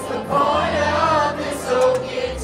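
Live country music in a stadium, with a large crowd singing along with the band, heard far from the stage in the stands.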